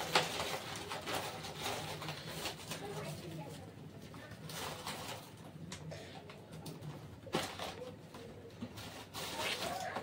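Hot oil faintly sizzling and foaming in a kadhai around a pinch of asafoetida, with a sharp knock at the start and again about seven seconds in.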